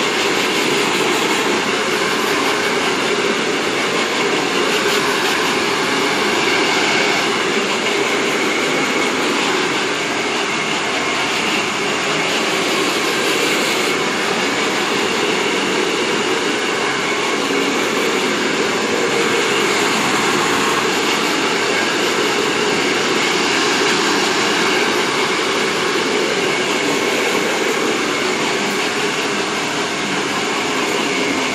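Handheld hair dryer running steadily, a continuous rush of air with a faint high motor whine, drying wet hair.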